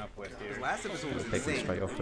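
Several people's voices talking and exclaiming over one another, with high gliding calls among them.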